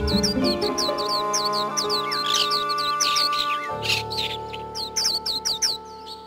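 Radio station jingle music of sustained chords with recorded birdsong laid over it: rapid, high, falling chirps. The chords change about two-thirds of the way through, and the music begins to fade near the end.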